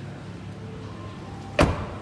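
Rear passenger door of a 2021 Toyota Vios GR Sport being shut: a single thud about one and a half seconds in, dying away quickly.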